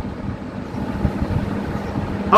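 A low, uneven rumble with a faint steady hum underneath.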